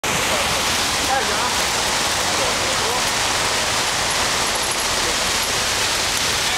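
Fountain water jets splashing in a steady rushing noise, with faint voices under it.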